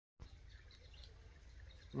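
Faint outdoor ambience: a steady low rumble with a few faint, distant bird chirps, ending in a short hummed 'mm'.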